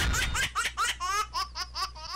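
High-pitched laughter: a quick run of short rising 'ha' bursts, growing quieter toward the end.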